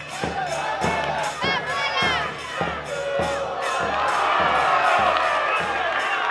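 Football crowd shouting and cheering over a steady drumbeat of about three beats a second, with rising whoops about one and a half to two seconds in. The cheering swells louder in the second half.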